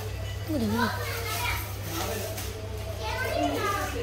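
Background voices, children among them, talking and playing over a steady low hum.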